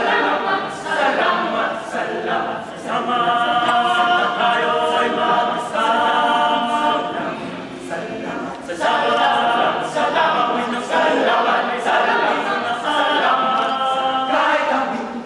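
Choir of teenage boys singing a cappella in several parts, holding chords in phrases that break off briefly every few seconds.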